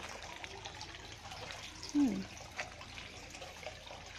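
Steady trickle of running water into a small fish pond, with faint drips.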